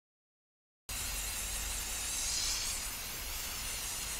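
Aerosol spray mold release hissing steadily from the can for about three seconds as a coat goes onto silicone, starting abruptly about a second in and cutting off at the end.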